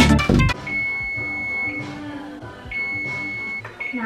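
Music cuts off about half a second in. Then an oven's electronic timer beeps twice, each a steady high tone about a second long.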